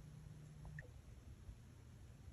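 Near silence: room tone with a faint low hum that stops a little under a second in, and a tiny faint chirp at about the same moment.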